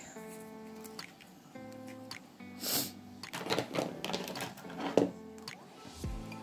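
Background music, over the crinkle and rustle of metallic nail-art transfer foil being handled and snipped with small scissors. There is a louder crackle of foil about two and a half seconds in, then a run of small clicks and snips.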